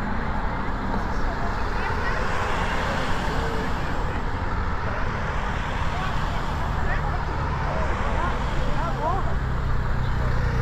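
Race-convoy cars and a van driving past along a street, with spectators chatting. Near the end a steady engine hum grows louder as a motorcycle approaches.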